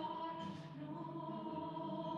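A group of voices singing a hymn, holding long notes.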